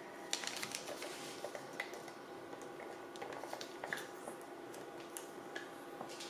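Faint rustling and scattered light clicks of paper or card being handled and pressed flat by hand on a plastic paper trimmer.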